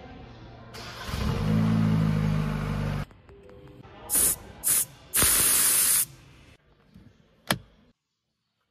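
Changan UNI-V's 1.5T engine heard at its exhaust, swelling up loud for about two seconds and cut off abruptly. Then three sharp hisses of air escaping as a tyre valve is pressed, the last about a second long, and a single sharp click near the end as the fuel filler door pops open.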